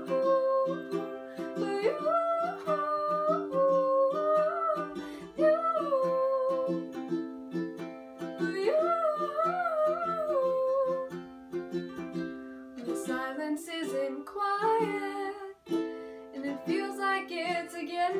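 Ukulele strummed in a steady rhythm while a woman sings a slow melody over it.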